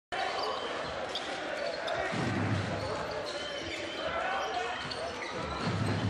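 A basketball being dribbled on a hardwood court, with a few low thuds, over a steady murmur of crowd voices in an arena.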